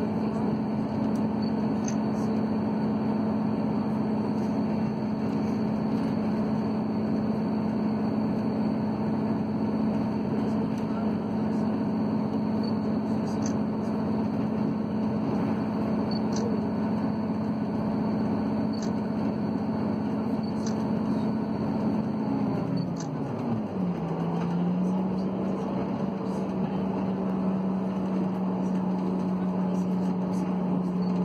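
Train running across a steel bridge, heard from inside the carriage: the diesel multiple unit's engine and transmission give a steady droning hum, with faint clicks. About three-quarters of the way through, the drone drops in pitch and settles at a slightly lower note.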